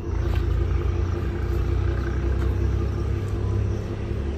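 A machine running steadily with a low hum made of several steady tones, unchanging throughout.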